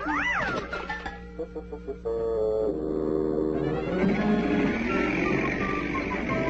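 Cartoon soundtrack: a cartoon cat's yowl, a quick cry that rises and falls in pitch right at the start, over background music that grows louder about two seconds in and again at four.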